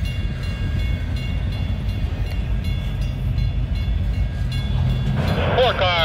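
Norfolk Southern double-stack intermodal freight train rolling past at close range: a steady low rumble of wheels and cars on the rails, with faint steady high tones over it.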